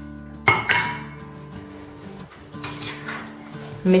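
A spoon clinking against a ceramic bowl while stirring chopped figs with sugar and lemon zest: two sharp clinks about half a second in, then a few fainter ones. Soft background music plays throughout.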